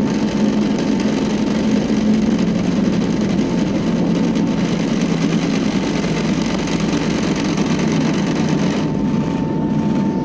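Airbus A320-family airliner's turbofan engines at takeoff thrust, heard from inside the cabin as a loud, steady roar with runway rumble during the takeoff roll. About nine seconds in, the upper rushing noise drops away as the aircraft lifts off.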